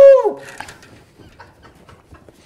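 A man's loud "woo!" called into a length of flexible aluminium dryer vent duct. It is one held high note that falls away and ends about a third of a second in.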